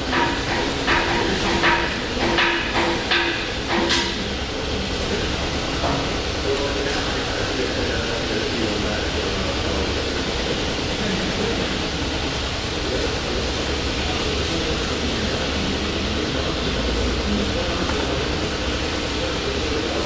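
Steady mechanical noise from a running refrigeration chiller, its condenser fan and compressor. A series of sharp clicks and knocks sounds in the first four seconds.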